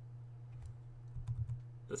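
A handful of faint clicks from a computer mouse, most of them in the second half, over a low steady hum.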